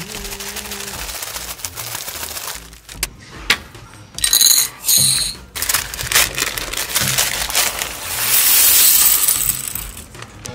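A clear plastic bag of small plastic building bricks crinkling as it is opened, then the bricks clattering out onto a tabletop in a dense rattle near the end.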